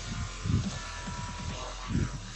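Feet landing from jumping star jumps on a gym floor: two dull thuds about a second and a half apart, over a steady electrical hum.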